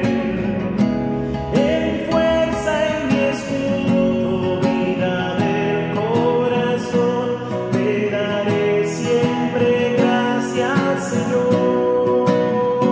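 A man singing a slow worship song, holding long notes, to a steadily strummed acoustic guitar.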